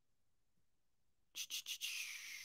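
Near silence, then, about a second and a half in, a few quick clicks of a computer mouse followed by a steady rubbing hiss as it slides across the desk or pad.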